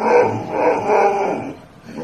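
Boxer dog vocalizing back at its owner with a long, wavering grumbling moan, a dog's 'talking back' protest at being scolded, that fades out about one and a half seconds in.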